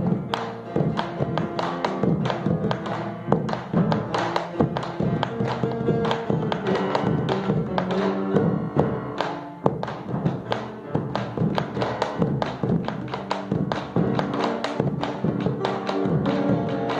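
Chacarera, Argentine folk music, with bombo legüero drumming: many sharp drum strikes in a steady rhythm over held melodic notes.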